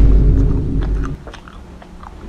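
Popcorn being crunched and chewed, a series of short sharp crunches, over a loud deep booming bass that drops away just over a second in.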